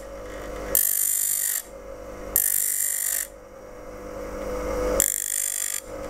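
Bench grinder motor running with a steady hum while a steel skew chisel is pressed to the corner of the wheel three times. Each pass is a rasping hiss of under a second, grinding the heel of the blade to thin its back edge.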